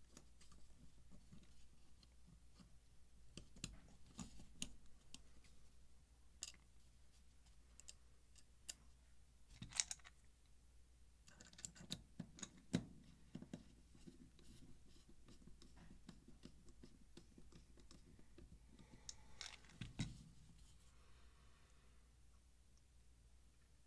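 Faint, scattered clicks and light metallic taps of a folding knife's parts being fitted back together by hand, with a small screwdriver turning in its handle screws. A few sharper clicks stand out about halfway through and near the end.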